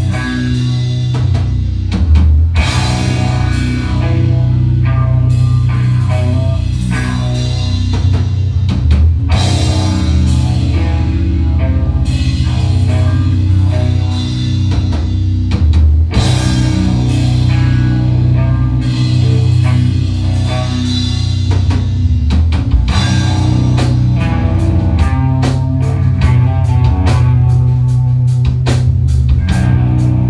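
Live stoner-rock band playing an instrumental passage: heavy electric guitars, bass and drum kit, with no singing. The cymbal strokes come faster in the last few seconds.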